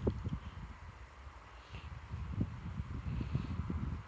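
Soft, irregular low rumble and faint knocks of wind and handling noise on the microphone.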